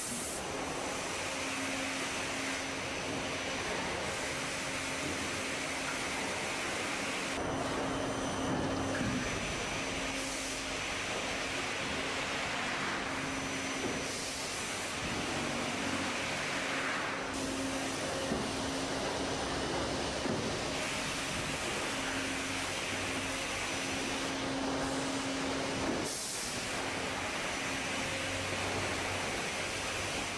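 Plywood mill machinery running: the steady noise and hum of a veneer peeling and conveying line. Its mix shifts abruptly every few seconds.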